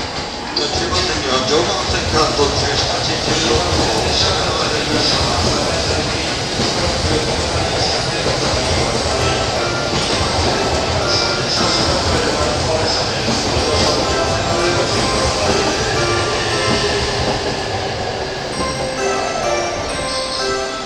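JR E657 series limited express train running into the platform on the next track, its wheels and running gear making a loud rumble with a high hiss as the cars pass close by. The noise swells about a second in and grows fainter near the end.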